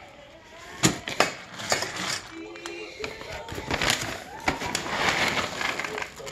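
Dry dog kibble being scooped with a metal scoop and tipped into a stainless steel bowl: a few sharp clicks of the scoop against the bowl about a second in, then a rattling patter of kibble pieces falling into the steel bowl that builds toward the end.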